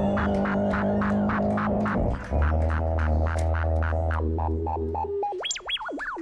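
Loopstation beatbox performance: layered looped vocal sounds with a sustained bass and a quick steady beat of percussive hits. A little after two seconds the bass shifts to a lower note, and near the end the bass drops away, leaving high sounds that sweep up and down in pitch.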